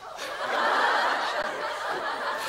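Audience laughter: many people laughing together, swelling up within half a second and holding steady.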